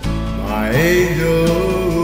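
Country band music with acoustic guitar; a melody line glides and bends through the middle over a steady low bass note.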